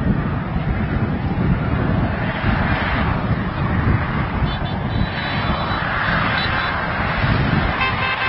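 Vehicle horns sounding over a loud, steady outdoor din of traffic and crowd noise. Held horn tones come in about halfway through and again near the end.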